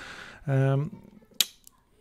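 A breath and a short wordless vocal sound from a man, then a single sharp click about one and a half seconds in.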